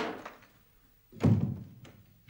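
Two heavy thuds, one right at the start and one a little past the first second, each dying away over about half a second, with a faint click just after the second.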